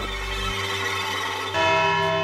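Dramatic background music of sustained, bell-like tones, with a new, louder chord coming in about one and a half seconds in.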